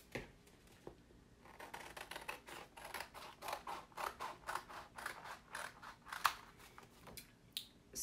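Scissors cutting a Chalk Couture transfer sheet: a quick run of short snips, about four a second, starting about a second in.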